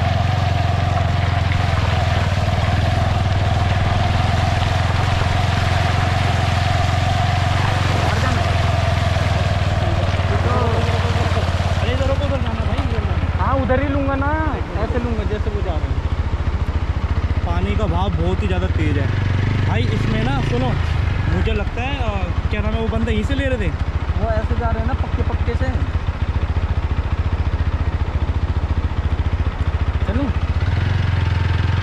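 TVS Apache 160 motorcycle's single-cylinder engine running steadily at low revs. Indistinct voices come in about a third of the way through and carry on over the engine for most of the rest.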